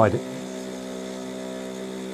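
Mini vortex mixer's motor running with a steady hum while it spins a small bottle of liquid with a ball bearing inside.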